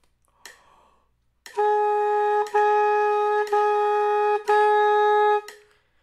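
Alto saxophone playing four tongued notes on the same pitch, each held about a second, with a short clean break between them where the tongue touches the reed to start the next note. This is a beginner's tonguing exercise.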